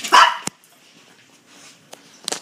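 Small dog giving one short bark at the very start, followed by a single sharp click.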